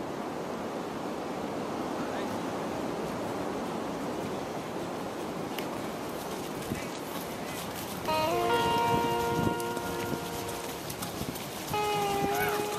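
Outdoor sound as a field of trail runners goes by: a steady rushing noise. About eight seconds in, several held pitched tones join it and it grows louder.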